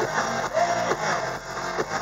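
Hard rock band playing live: electric guitars and drum kit in a loud instrumental passage, heard from the crowd through the stage PA.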